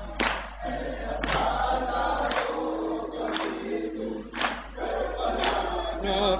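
A group of men chanting a Muharram noha (lament) in chorus while beating their chests in unison (matam), with a sharp slap about once a second.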